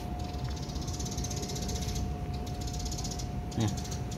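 Insects chirring steadily in the background, a high, fast-pulsing trill, with a brief voice sound near the end.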